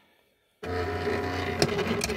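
Silhouette Cameo 2 cutting machine running a Foil Quill job, its carriage and roller motors making a steady hum and whine with a couple of sharp clicks as the heated quill traces the design through foil. The sound starts abruptly about half a second in, after a moment of silence.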